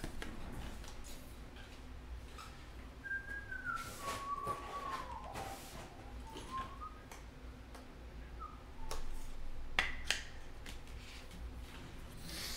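A person whistling a few notes softly: one thin tone that steps and slides downward, then turns back up. Faint clicks and knocks are scattered around it, with a small cluster near the end.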